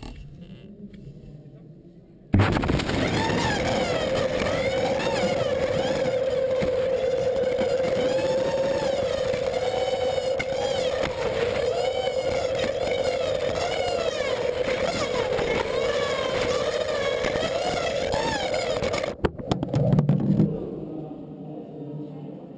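Air rushing through a pneumatic tube system blown by vacuum cleaners, heard from inside the travelling capsule. It starts suddenly about two seconds in as a loud steady rush with one steady hum and wavering higher tones. It stops abruptly near the end, when the capsule arrives, and a few handling knocks follow.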